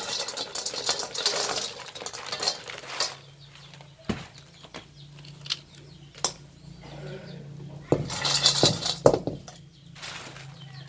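Dried seeded-banana pieces poured from a plastic basket into a metal wok, rattling and clattering against the pan for the first couple of seconds, then scattered clicks as they settle and are spread, with another burst of rattling near the end.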